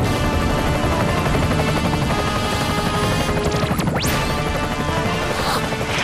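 Action cartoon soundtrack: dramatic music with crashing sound effects, and a quick rising whoosh about four seconds in.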